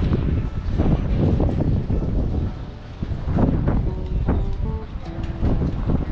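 Wind buffeting the camera microphone in irregular gusts, with music playing in the background.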